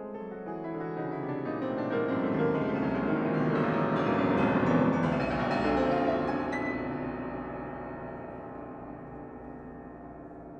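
Solo grand piano playing a dense run of many notes that swells to its loudest about halfway through, then the sound rings on and slowly fades away.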